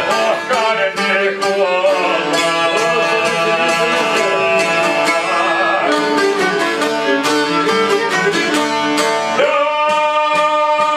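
Albanian folk instrumental: a bowed violin melody over rapidly plucked long-necked lutes, including the çifteli, playing steadily throughout.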